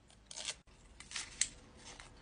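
A few faint, short rustles and scrapes from handling a foil-wrapped chocolate.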